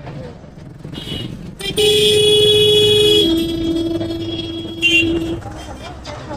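Vehicle horns honking in slow, dense road traffic: a higher-pitched horn held for about a second and a half, followed at once by a lower-pitched horn held about two seconds. Shorter toots come about a second in and near the end, over a steady traffic rumble.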